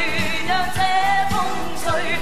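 Women singing a Cantonese pop ballad live on stage with a band; the held notes waver with vibrato.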